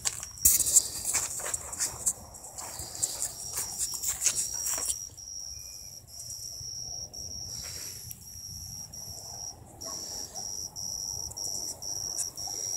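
Dry grass and brush rustling and crackling for the first five seconds or so, then a high, steady insect trill that runs in long stretches broken by short gaps.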